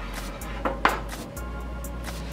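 Two quick metallic knocks, the second louder and ringing, from a skillet being moved on a wooden cutting board, over background music with a steady beat.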